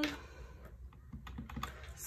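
Keys of a plastic desktop calculator being pressed, several quick taps in the middle as the display is cleared to zero.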